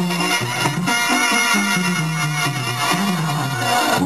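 Banda sinaloense brass band playing live: a tuba bass line stepping between notes under a wavering wind and brass melody.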